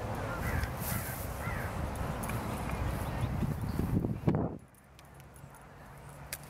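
Wind buffeting the microphone, a steady low rumble with a few faint bird calls over it, until the sound drops away suddenly about four and a half seconds in.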